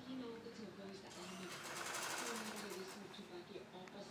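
Sewing machine stitching in a short run of about two seconds, starting about a second in, with fast, even needle strokes.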